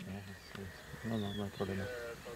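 A low male voice talking quietly in short phrases, with a faint insect buzz behind it.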